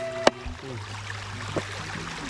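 A knife chopping once on a wooden cutting board, a sharp crack about a quarter-second in, over the steady rush of a shallow stream.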